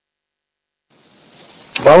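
Dead silence for about a second between speakers on a live audio stream, then a faint hiss and a short, steady, high-pitched electronic whine. A man's voice starts near the end.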